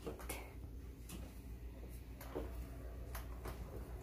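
Quiet room tone: a low steady hum with a few faint, scattered clicks.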